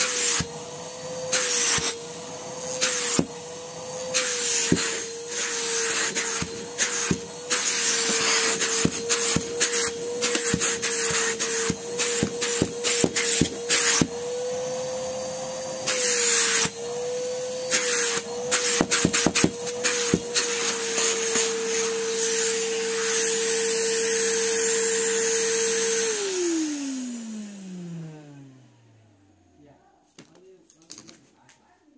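Numatic Henry cylinder vacuum cleaner running, its motor tone wavering slightly as the hose nozzle is worked over carpet, with frequent clicks and bursts of rushing air. Near the end the vacuum is switched off and the motor whine falls away over a few seconds.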